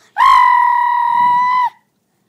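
A single high-pitched vocal squeal, a put-on puppet voice, held at one steady pitch for about a second and a half, then cut off sharply.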